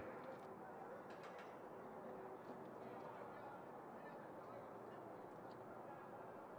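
Faint, steady background noise of the racetrack broadcast feed, with no clear event in it.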